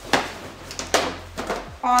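Latex balloons rubbing and knocking against each other as hands wrap a long twisting balloon around a balloon cluster: a few short, sharp handling sounds spread over two seconds.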